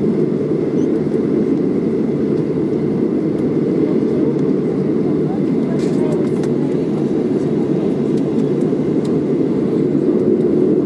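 Cabin noise inside a Boeing 737-700 taxiing after landing: a steady rumble from the idling CFM56-7B engines and the cabin air, with a faint steady high whine over it.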